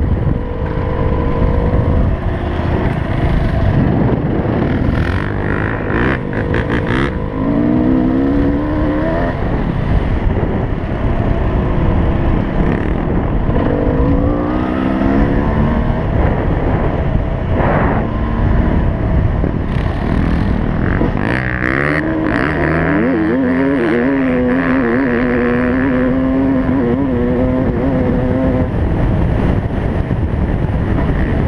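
Dirt bike engine under hard riding, its pitch climbing and dropping again and again as the throttle opens and it shifts gears, over steady wind buffeting on the bike-mounted microphone.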